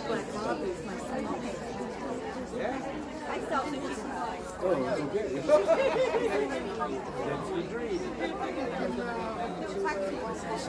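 Indistinct background chatter of several people talking at once in a large hall, with no single voice standing out.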